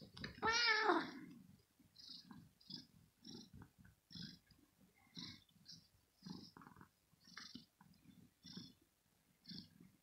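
A kitten being teased while it rests gives one short, loud meow that rises and then falls in pitch, about half a second in. Soft, irregular low pulses follow, roughly two a second.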